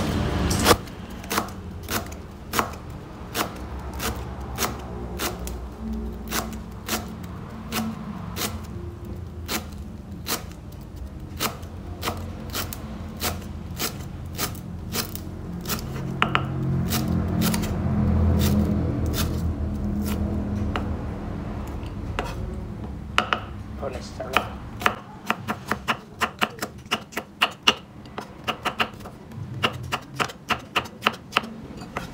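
Kitchen knife chopping lemongrass on a wooden chopping board: a steady series of sharp knocks, about two a second, quickening near the end as red chillies are cut.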